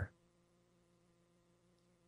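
Near silence: room tone with a faint, steady electrical hum.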